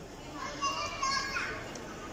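A child's high-pitched voice calling out, starting about half a second in and lasting about a second, over the steady murmur of people in a large hall.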